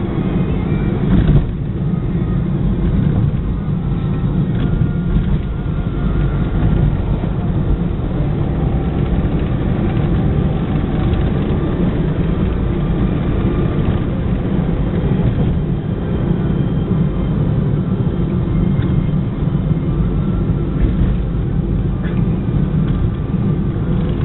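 Steady low rumble of engine and tyre noise heard from inside a car's cabin while driving at highway speed.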